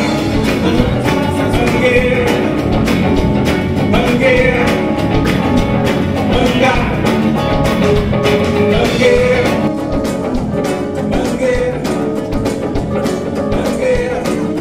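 A live band playing a song with a steady beat: nylon-string acoustic-electric guitar, electric guitar, bass guitar, drums and keyboard.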